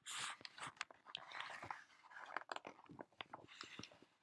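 Faint paper rustling and small clicks: the pages of a hardcover picture book being handled and turned, with a short rustle right at the start and another a little past a second in.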